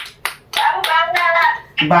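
A few quick hand claps at the start, followed by an adult voice talking in a sing-song way, with sung syllables beginning right at the end.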